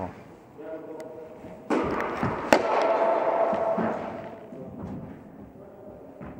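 A single sharp knock of a tennis ball on an indoor court, ringing in the hall, about halfway through. Indistinct voices carry through the hall around it.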